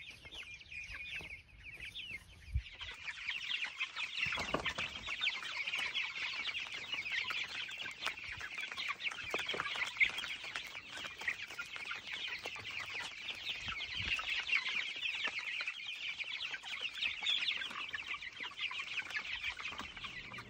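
A crowd of young chickens peeping, many short high chirps overlapping in a continuous chatter that grows fuller about three seconds in.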